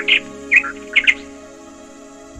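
A few short, high bird chirps in the first second or so, over calm instrumental background music with held notes.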